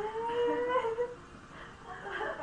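A single drawn-out vocal call, held for about a second with its pitch rising slightly, then quieter.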